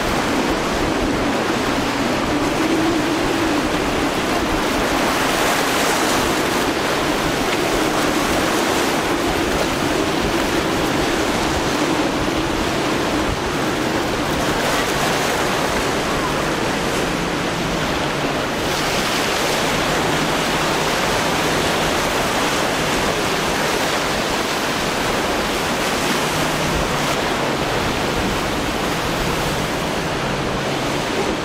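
Waves breaking and churning in a steady rush of water, with wind on the microphone. Under it the boat's outboard motor hums faintly, clearest over the first half.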